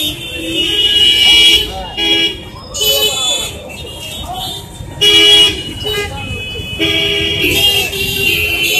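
Vehicle horns honking in street traffic, several honks of uneven length, some held for over a second, with people's voices in between.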